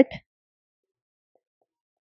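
Near silence after the end of a spoken word.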